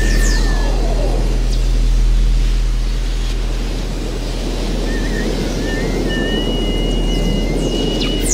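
Electronic ambient sound design: a deep steady drone under a hissing wash. Falling whistles come at the start and short warbling, chirping tones in the second half.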